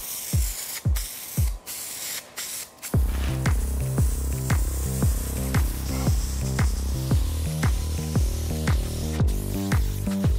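Aerosol can of Loctite spray adhesive (contact cement) hissing in short bursts with brief breaks as it is swept across foam and plywood. It plays over background electronic music with a steady beat, which fills out with bass about three seconds in.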